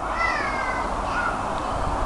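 A single drawn-out animal call that dips slightly in pitch, followed about a second in by a short fainter one, over a steady low background noise.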